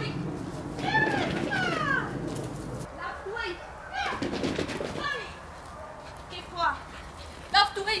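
A woman's high-pitched, wordless calls of encouragement to a dog, a series of short falling glides repeated every second or so.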